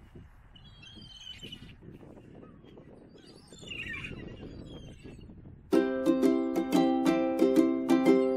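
A flock of gulls, faint, with two short cries. About six seconds in, plucked-string background music starts suddenly and is much the loudest sound.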